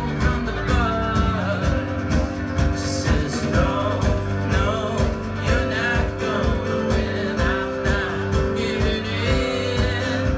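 Live folk-bluegrass band playing, with acoustic guitar, banjo and drum kit over a steady beat.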